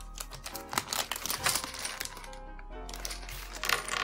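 Thin clear plastic bag crinkling as it is opened and handled, with many small crackles, over background music with a steady tune.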